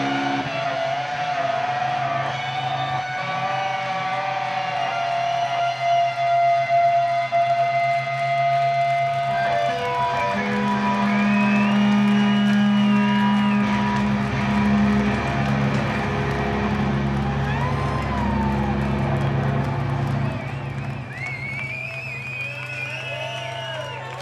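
Live rock band in an instrumental passage: electric guitars holding long sustained notes over a steady low drone, with high gliding, whining guitar tones. The sound thins and drops a little in level near the end.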